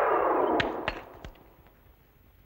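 Cartoon-style synthesized sound effect: a falling glide of several tones together ends about half a second in with three sharp knocks, then the sound fades out.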